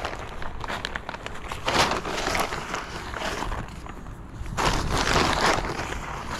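Plastic bag of Osmocote fertilizer being handled, rustling and crinkling, with two longer bursts about two seconds in and near the end.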